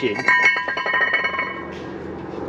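A metal part rings after being struck or knocked, with several clear tones that fade out over about a second and a half.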